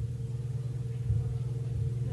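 Steady low hum with a faint higher steady tone in a pause between speech: the constant background noise of the recording.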